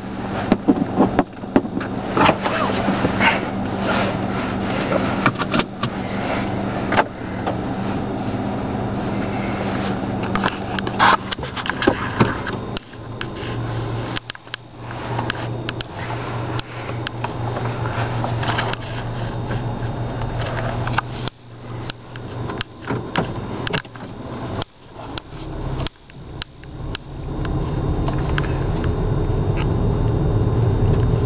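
Car engine running, heard from inside the cabin: a steady low hum with many sharp knocks and rustles of handling close to the microphone over it. The engine sound grows louder in the last few seconds.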